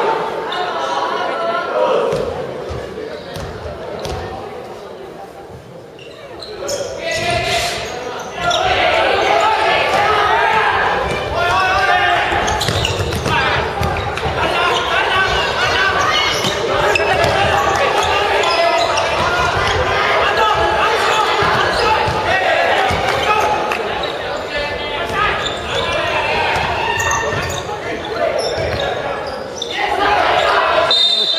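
A basketball bouncing and thudding on a wooden gym floor during play, under players' and bench voices calling out, echoing in a large hall. It is quieter a few seconds in and busier from about eight seconds on.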